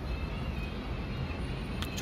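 Low, steady rumble of wind on the microphone mixed with road traffic. A faint high steady tone comes in about half a second in, and there is a short click near the end.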